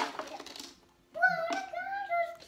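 Puzzle pieces tipped out onto a table, a loud clatter at the very start that dies away within about half a second. About a second in, a young child's high-pitched voice follows in a long, drawn-out sound.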